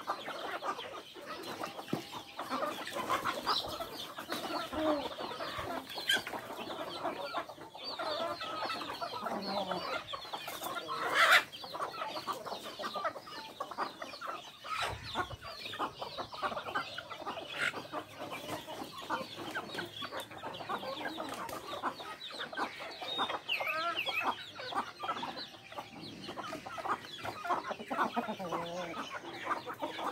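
A flock of chickens, hens and growing chicks, clucking and cheeping continuously as they forage. One brief, louder sound stands out about eleven seconds in.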